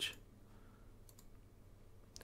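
Faint computer mouse clicks, a couple of them about a second in, over quiet room tone.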